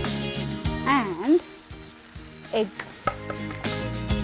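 Mushrooms, peppers and paneer sizzling as they stir-fry in a hot pan. Background music drops out about a second in and comes back near the end.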